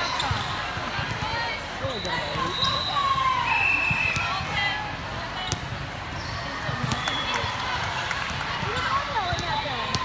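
Busy sports-hall ambience of a volleyball tournament: many overlapping voices, with scattered sharp knocks of balls hitting hands and the hardwood floor on the courts. Brief high-pitched tones cut through a few times.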